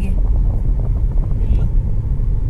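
Low, steady rumble inside a car's cabin: the car's engine and road noise.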